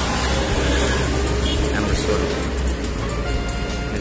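Street traffic rumbling, mixed with indistinct voices and music.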